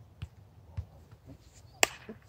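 Footsteps of a player running on grass: soft, regular thuds about twice a second, then a single sharp click near the end.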